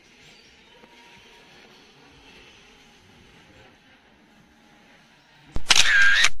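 Faint outdoor background, then about five and a half seconds in a short, loud camera-shutter sound effect that goes with a filmstrip photo transition and cuts off abruptly.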